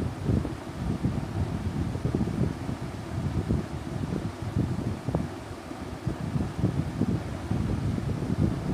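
Moving air buffeting the microphone: an uneven low rumble that rises and falls.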